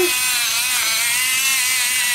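Electric pepper mill grinding pepper over a pan: a steady, high motor whine that wavers slightly in pitch.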